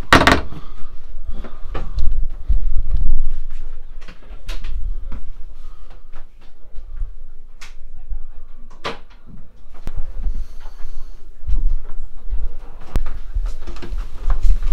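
Scattered clicks and knocks of a sailing yacht's cabin doors and cupboard latches, over a low rumble.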